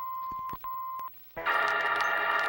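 A steady, high electronic beep tone that breaks off briefly about half a second in and stops about a second in. After a short silence, a shimmering, chiming electronic sound starts near the end: the sci-fi transporter sound effect of a Star Trek-style beam-out.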